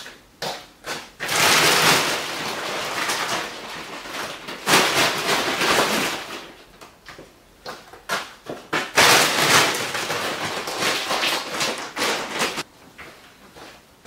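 Things being handled and moved about: three long bouts of rustling and scraping, with a few short knocks between them.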